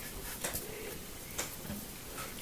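Faint sounds of a felt-tip marker drawing on paper, with two light ticks about a second apart.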